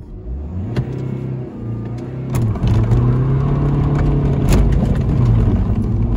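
Mini Paceman's BMW N47 four-cylinder turbodiesel accelerating hard from low speed, heard from inside the cabin. The engine note climbs at first and then holds. About two seconds in the pitch drops briefly and the engine then pulls on louder, with another brief dip near the end.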